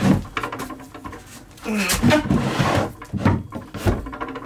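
Handling noise as quilts and blankets are moved by hand: fabric rustling, with a few sharp knocks, one at the start and two near the end.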